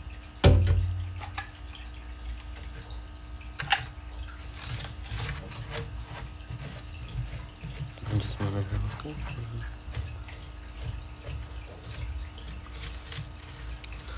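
Handling noises of hands applying adhesive to a bark-and-dirt terrarium background: a heavy thump about half a second in, then scattered small clicks and rustles as a gloved hand rubs the glue in, over a faint steady hum.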